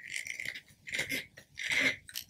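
Threaded lid of a Q-Cup Max hydrogen water bottle being twisted on by hand: three short grating bursts from the threads, a bit under a second apart.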